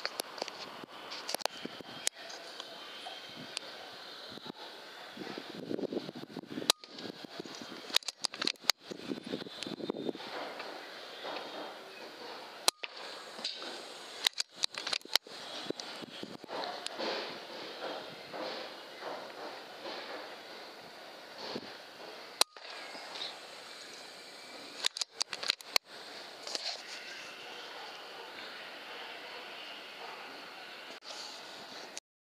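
Faint steady hiss with scattered sharp clicks and knocks, broken several times by brief dropouts to silence.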